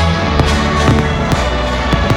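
Fireworks shells bursting: about four sharp bangs over loud music with sustained notes.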